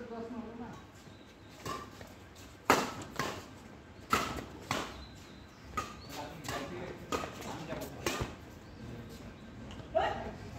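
Badminton racquets striking a shuttlecock in a fast doubles rally: a string of sharp smacks, roughly one every half second to second, the loudest about three seconds in.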